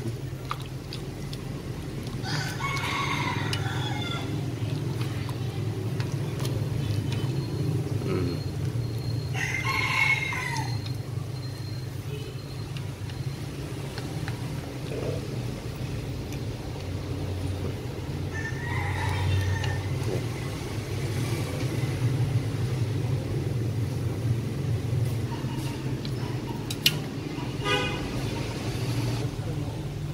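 A rooster crowing three times, each crow lasting about a second and a half, roughly eight seconds apart, over a steady low hum.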